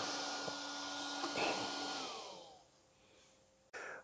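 A small electric cooling fan in an RC car's electronics runs with a steady whir and high whine, then winds down, its pitch gliding lower as it fades out about two and a half seconds in.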